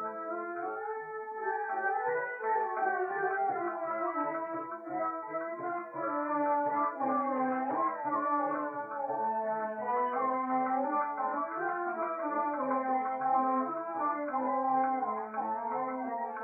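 Instrumental interlude of a 1940s Hindi film song: melody lines moving over a steady low note. It is an old, narrow recording with no treble.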